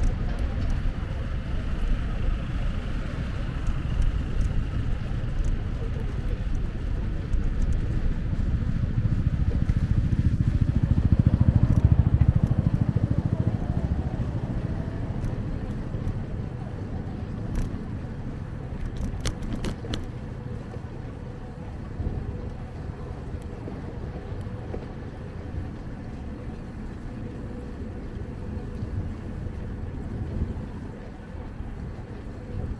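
Low rumble of wind on the microphone and bicycle tyres rolling on asphalt during a ride. It grows louder around the middle of the stretch, then eases off, with a few light clicks about two-thirds of the way through.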